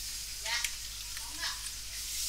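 Steady hiss with a low hum underneath, the noise floor of a recording microphone, with a short faint murmur of a voice about half a second in.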